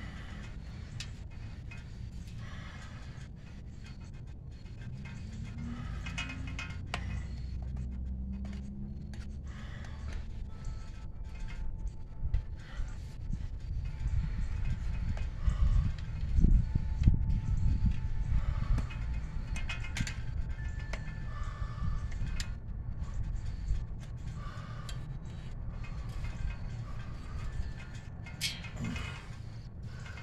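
Hands and a screwdriver working a worn tyre bead off a bicycle rim: scattered clicks and scrapes over a low rumble, loudest a little past halfway.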